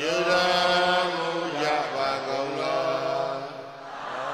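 Buddhist devotional chanting: a man's voice chanting in long held notes, with the pitch stepping down partway through.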